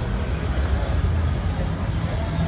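Busy city street ambience: a steady low rumble with faint crowd chatter over it.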